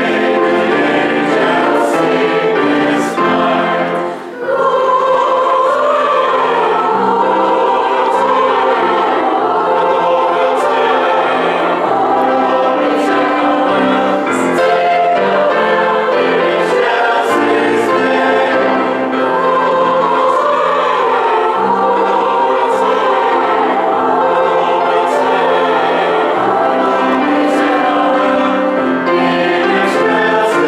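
Mixed choir of men's and women's voices singing a Christmas cantata, with a short break between phrases about four seconds in.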